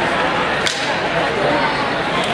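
A single sharp swish about two-thirds of a second in, from a fast move in a traditional weapons form, the weapon or the uniform cutting through the air, over the steady chatter of a busy tournament hall.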